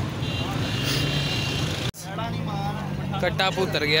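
Motor vehicle engines running in busy street traffic, a steady low hum under a general outdoor noise. The sound breaks off for an instant about two seconds in, then the engine hum carries on with men's voices in the background near the end.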